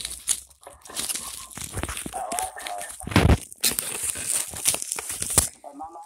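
Plastic packaging crinkling and rustling, with clicks and scrapes from a cardboard box, as a boxed radio is unpacked by hand. A heavy bump a little after three seconds in is the loudest sound.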